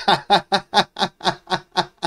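A man laughing: a run of short, evenly spaced "ha" bursts, about four or five a second.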